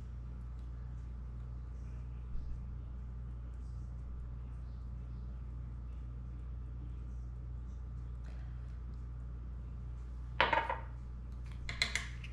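Spoon and saucepan clinking a few times near the end, over a steady low hum.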